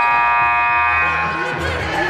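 Gym scoreboard horn sounding one steady blast of about a second and a half, over background music with a pulsing bass.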